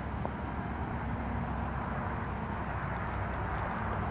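Steady outdoor background noise, a low rumble with a light hiss over it, and no distinct events.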